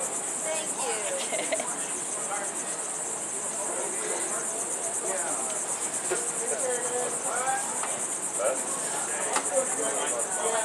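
A steady, high-pitched insect chorus: a continuous, finely pulsing buzz from the surrounding vegetation.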